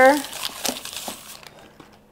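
Greasy butter wrapper paper crinkling as it is rubbed around a glass bowl to grease it, with a few light clicks, fading out by about halfway through.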